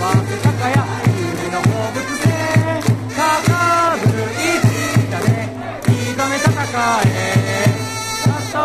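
Japanese baseball cheering section: a crowd of fans chanting a player's cheer song over trumpets and a steady drum beat, about three or four beats a second.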